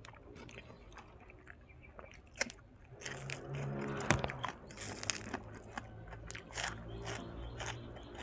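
A person chewing food close to the microphone, with many small crunches and clicks of biting; the crunching is loudest from about three to five and a half seconds in, with one sharp crunch just after four seconds.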